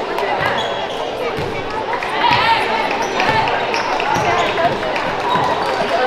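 A basketball is dribbled on a hardwood gym floor, with repeated bounces at a steady pace of roughly two a second.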